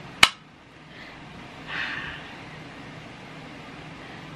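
A single sharp click just after the start, then a soft breath out about two seconds in, over a faint steady room hum.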